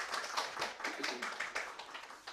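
A small audience of a few people clapping their hands, a quick patter of claps that thins out and dies down near the end.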